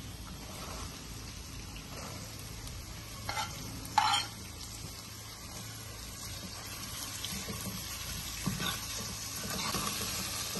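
Chopped onions frying in hot oil in a steel kadai, a steady low sizzle, with a metal spoon stirring them. Two short louder sounds come about three and four seconds in.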